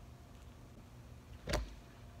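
Faint steady low hum of room tone, broken about one and a half seconds in by a single short, dull thump.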